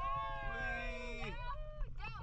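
Human voices giving long, drawn-out, high-pitched exclamations, two of them overlapping and rising then falling away after about a second and a half, over a steady low rumble.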